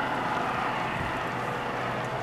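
Steady roar of a large wooden building burning, with a low steady hum underneath.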